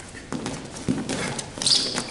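Wrestling shoes stepping and scuffing on a wrestling mat in a series of irregular soft thumps as two wrestlers grapple into a high-crotch takedown. There is a brief hiss or squeak near the end.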